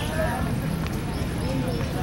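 Background chatter of people outdoors, with a choppy wind rumble on the microphone.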